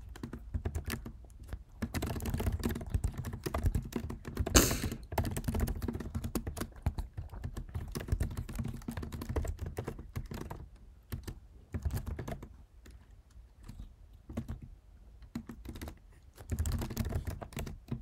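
Typing on a computer keyboard: quick runs of keystroke clicks in bursts, with one louder knock about four and a half seconds in, sparser taps later on and a final flurry near the end.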